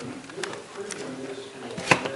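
Low, indistinct voices murmuring in a room, with one sharp click just before the end.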